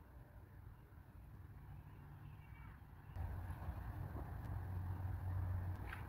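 Quiet outdoor background with a steady low rumble that grows louder about three seconds in, and a faint bird call about two and a half seconds in.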